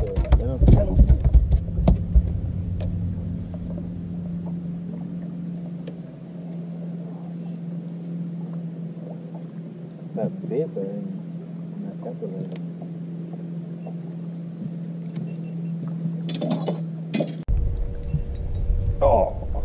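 A bass boat's motor running with a steady low hum, which cuts off suddenly near the end. Brief faint voices come in twice.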